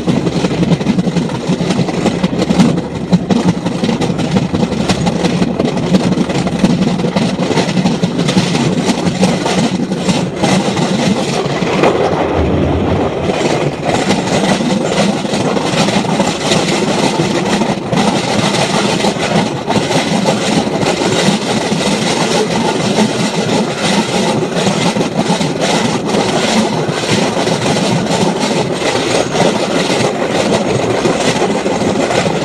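Passenger train running at speed, heard from outside the front of the vehicle: a steady rumble of wheels on the rails and engine, with irregular knocks from the track and wind on the microphone.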